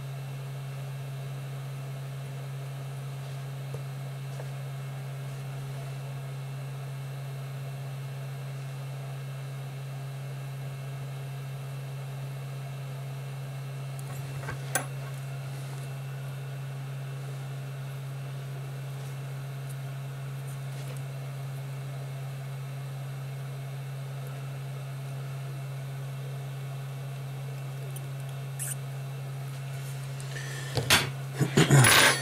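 Steady low electrical hum with a faint hiss behind it. One sharp click comes about halfway through, and a few faint ticks near the end, as the phone's circuit board and small parts are handled.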